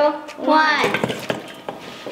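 Homemade bath bombs dropped together into a glass bowl of water, splashing in and then fizzing faintly as they start to dissolve.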